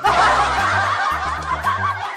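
Snickering laughter, several wavering voices at once, as a cartoon sound effect over background music with a repeating bass line.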